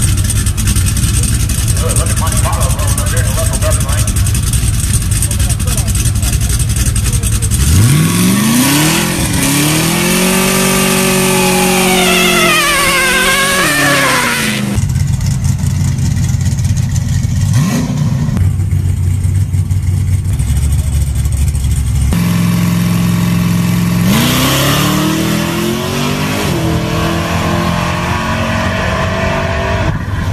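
A car engine at a drag strip revving up hard: about eight seconds in its note climbs steeply and holds high for several seconds as the car accelerates, then falls away. It climbs again in a second rising run in the last quarter.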